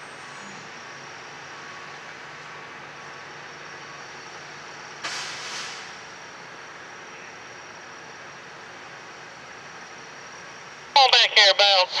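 Diesel engine of a Brandt hi-rail truck running steadily as it moves slowly along the track. A short hiss comes about five seconds in. In the last second a radio voice calls out the distance to the coupling.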